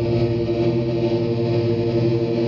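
Electric guitar played through effects pedals, giving a loud, steady drone of several held tones with no breaks.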